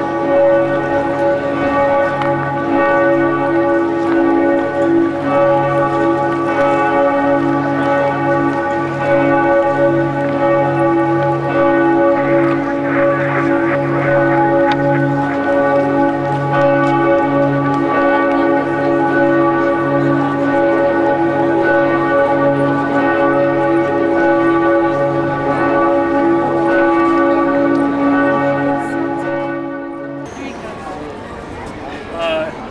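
Cathedral bells pealing continuously, several large bells sounding at once in a steady, overlapping ring with a deep bell striking unevenly beneath. The peal cuts off suddenly at the very end.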